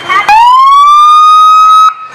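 Highway patrol car's siren giving one very loud blast: the note rises quickly, holds steady for about a second and a half, then cuts off suddenly near the end.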